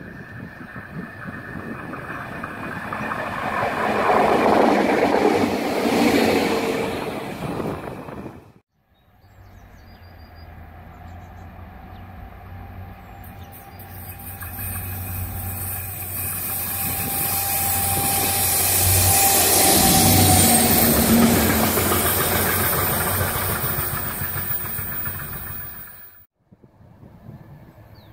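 Two train pass-bys on a rail line. First a train approaches and passes, loudest about five seconds in, and cuts off suddenly. Then a diesel locomotive hauling a tank wagon approaches with a steady low engine hum and rumbling wheels, growing loudest near the end.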